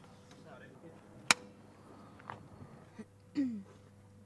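A film clapperboard snapped shut once, a single sharp clap about a second in. Faint voices are around it, with a short voiced sound near the end.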